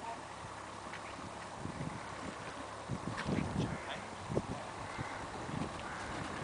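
Hoofbeats of a cantering horse on a sand arena surface: dull, irregular thuds that become clearer from about two seconds in as the horse comes closer.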